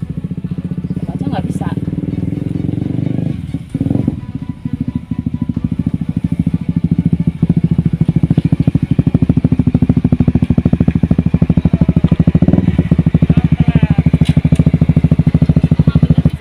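Sport motorcycle engine running with a steady, fast pulsing note. It grows louder partway through and cuts off abruptly right at the end as the bike stops.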